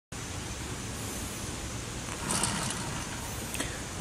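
Steady background noise with no siren running, and a brief rustle a little past two seconds in.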